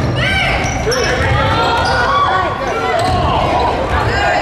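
A basketball bouncing and sneakers squeaking on a hardwood court during play, with voices of players and spectators.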